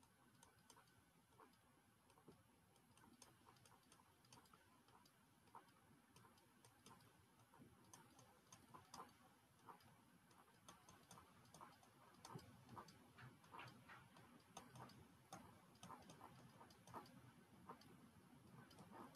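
Faint, irregular clicks and taps of a stylus on a tablet while writing, growing busier in the second half, over near silence.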